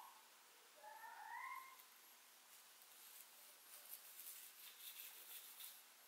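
Near silence, with a manual toothbrush faintly scrubbing teeth in short strokes from about two and a half seconds in. A brief faint rising cry comes about a second in.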